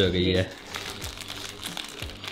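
Irregular crinkling and rustling, as of plastic wrapping being handled, after the tail end of a woman's speech in the first half second.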